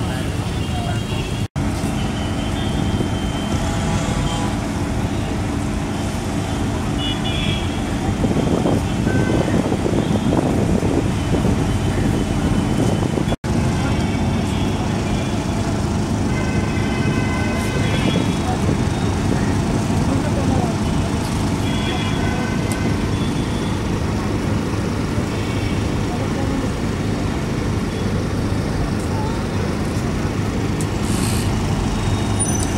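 An engine running steadily with a low hum, under crowd voices and short horn toots from road traffic.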